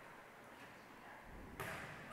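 Quiet gymnasium room tone, with one faint hit about one and a half seconds in: a volleyball serve being struck.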